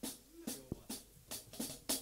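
Drum kit played lightly: about eight loose, unevenly spaced snare and kick drum hits, one low kick thump near the middle.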